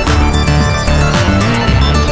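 Live electronic music from hardware analog synthesizers: a repeating sequenced bass line under layered synth tones, with a sharp drum hit about once a second.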